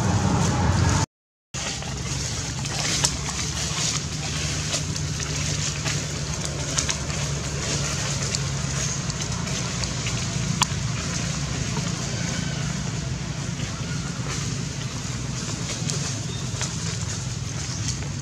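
Steady outdoor background hum with a few sharp clicks. The sound cuts out completely for about half a second, about a second in.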